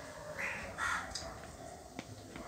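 A bird calling twice in quick succession, two short calls about half a second apart, over faint background.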